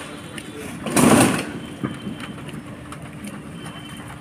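Rifles of a parade squad brought down to the order in unison: one short, loud burst of hand slaps and rifle butts striking the ground about a second in, over a steady low hum.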